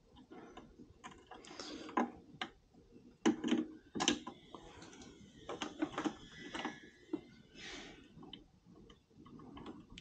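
Scattered light clicks and taps of small metal parts being handled as a rear brake cable is loosened at its brake and worked free, with a folding hex-key tool in hand.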